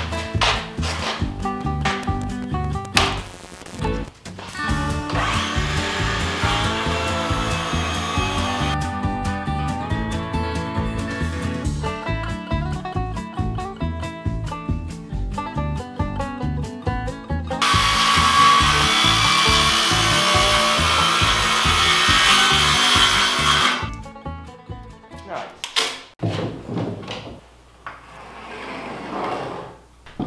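Background music with a steady beat, over which a cordless jigsaw cuts a curve through pine planks almost two inches thick, in two long runs of several seconds each, the second louder.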